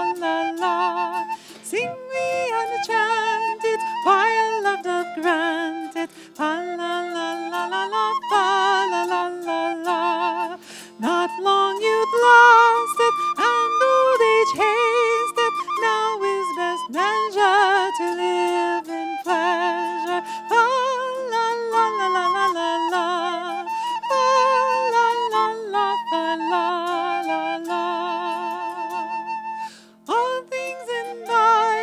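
A woman singing an old English song with vibrato, accompanied by a plucked zither-like stringed instrument that she holds, while a wind instrument plays a second melodic line alongside.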